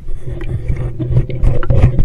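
A scuba diver breathing through a regulator, heard underwater through the camera housing: a low, uneven bubbling rumble with many small clicks scattered through it.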